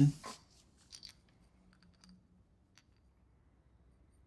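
Faint clicks and light scrapes as an aluminium piston is picked up off a wooden workbench and handled.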